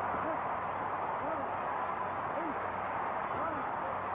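Steady crowd noise on an old, dull film soundtrack with a faint low hum. Over it, a man's voice calls out about once a second: the referee counting over a knocked-down boxer.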